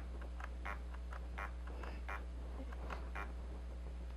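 Hobby stepper motor under an Arduino indexer controller, energised and turning a pointer: a steady low hum with short, faint chirps about two or three times a second.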